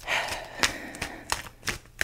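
A short breath, then a tarot deck being shuffled by hand, the cards giving about four sharp clicks and slaps spread over the rest of the two seconds.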